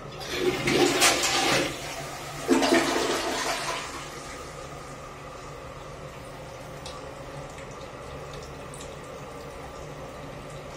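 Dual-flush toilet flushed by pressing the push button on its cistern: water rushes out in two loud surges over the first four seconds, then the tank refills with a quieter, steady sound of running water.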